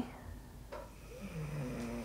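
A sleeping dog snoring faintly, a low snore in the second half.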